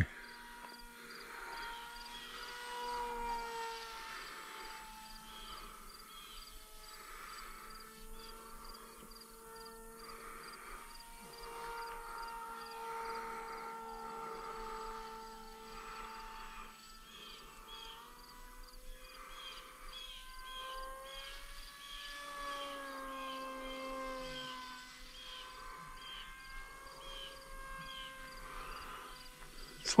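Distant drone of a small sub-250 g RC flying wing's motor and propeller: a faint steady whine that slowly rises and falls in pitch as it flies high overhead. Short high chirps repeat several times a second through the second half.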